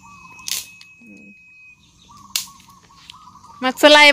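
Two sharp chops of a blade striking firewood, about two seconds apart.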